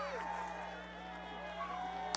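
Audience voices after a live set ends: several people calling out and talking at once, over a steady low hum.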